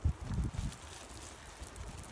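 Wind buffeting the microphone in a few low gusts during the first second, then a faint steady outdoor hiss.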